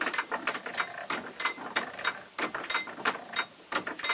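Antique hand-cranked pillar drill (post drill) being turned by its crank: its gearing and self-feed ratchet click quickly and unevenly, with a short pause near the end.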